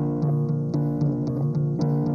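Live band playing an instrumental bar of an indie rock song without vocals: an electric guitar over sustained chords, with a steady pulse of about four strokes a second.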